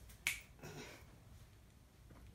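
One short, sharp click, like a finger snap, about a quarter second in, otherwise a faint, quiet stretch.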